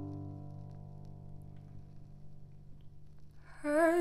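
A piano chord, struck just before, ringing on and slowly fading. Near the end a woman's voice comes in singing with vibrato.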